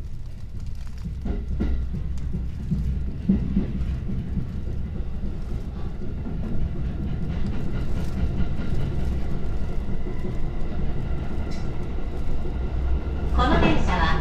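JR Joban line commuter train heard from inside the car as it pulls out of the station and picks up speed: a low running rumble that grows steadily louder, with a few wheel clacks over rail joints in the first seconds.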